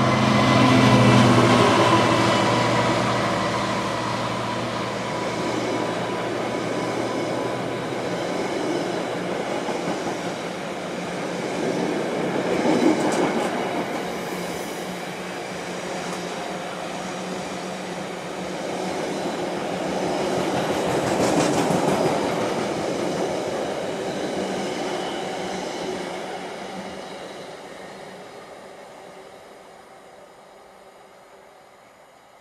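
Freightliner Class 66 diesel locomotive passing at speed, its EMD two-stroke engine note loud at first and dying away within the first several seconds. A long rake of box wagons follows, rumbling and clattering over the rails, and fades away towards the end.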